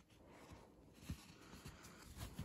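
Near silence: room tone with a few faint, low knocks, the loudest about a second in.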